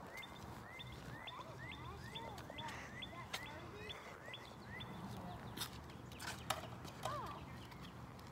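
A bird singing a faint run of short, quickly rising notes repeated about two or three times a second, stopping about five seconds in. A few faint clicks later on.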